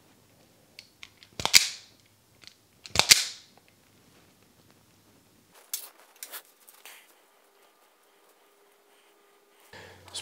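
Hand wire strippers closing on two-conductor speaker wire to cut and strip its ends: two sharp snaps about a second and a half apart, then a few fainter clicks.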